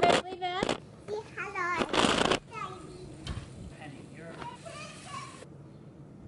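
A toddler babbling in short, wavering sing-song sounds close to the microphone, with a loud bump at the start and a rustling burst about two seconds in as the camera is handled.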